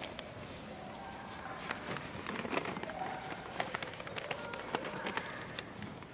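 Concert hall pause between pieces: footsteps on a wooden stage and scattered light clicks and knocks, over a faint murmur of voices.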